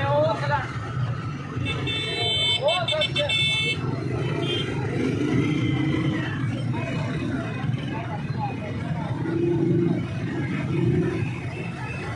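Busy street background: steady traffic noise with a vehicle horn sounding for about a second and a half, about two seconds in, and voices chattering in the background.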